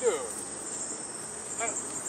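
Steady, high-pitched chirring of insects in summer vegetation, with a short falling vocal sound right at the start and another brief voice sound near the end.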